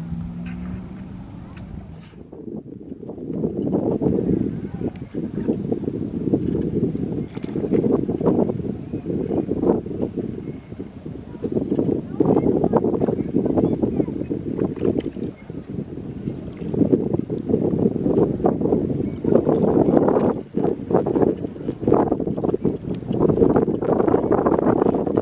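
Wind buffeting the microphone: a low rumble that swells and drops in gusts.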